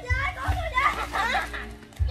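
A high-pitched voice vocalising over background music with a low bass line.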